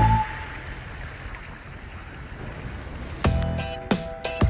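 A steady rushing noise of floodwater running across an asphalt road, between two pieces of background music. A whistled tune ends at the start, and a new tune with plucked notes starts a little after three seconds in.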